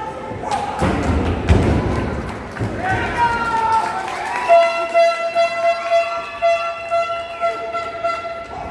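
Wrestler slammed onto the wrestling ring's mat: a run of heavy thuds about a second in, with spectators shouting. From about halfway on, a long, steady high note is held.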